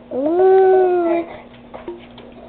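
A dog giving one long howl, about a second long. It rises at the start, then holds and sags slightly before it stops.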